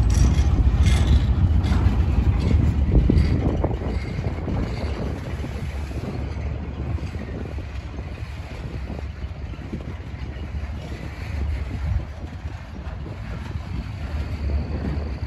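Loaded freight flatcars rolling past on steel wheels: a steady rumble with clicks and clanks, loudest for the first few seconds and then quieter as the cars roll on.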